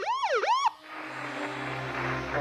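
Ambulance siren in a fast yelp, rising and falling about four times a second, that cuts off suddenly less than a second in, leaving a low steady drone.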